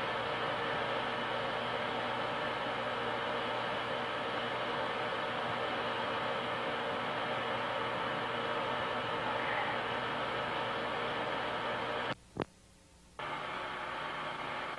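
Steady hiss and hum with no distinct events. About twelve seconds in it drops out almost to silence for about a second, broken by a single click, then resumes.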